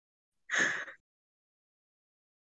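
A single short breath, a quick gasp or sigh of about half a second from a person at the microphone, about half a second in; the rest is dead silence.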